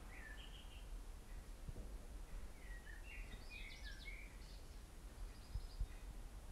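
Faint bird chirps, a few short calls near the start and a cluster of them in the middle, over a low steady room rumble.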